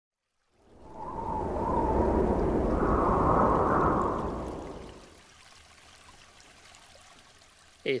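A wind-like rushing whoosh for a logo animation, swelling in over about a second and a half, holding, then fading away by about five seconds in, with a faint whistle over it that wavers and rises slightly. A low hiss follows, and a man says "Hey" at the very end.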